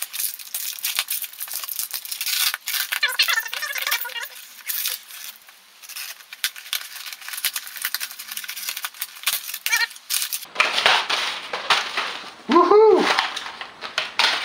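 A taped cardboard box being cut and torn open, with packing tape ripping, cardboard flaps scraping and packing paper crinkling as it is pulled out.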